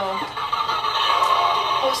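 Electronic engine sound from a toy pedal Porsche 911's battery-powered sound unit in the steering wheel: a steady, buzzy electronic tone that cuts off at the end. A short laugh comes over it about a second in.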